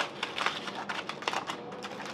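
Aluminium foil crinkling in quick, irregular little clicks as it is handled and unwrapped from a piece of chicken.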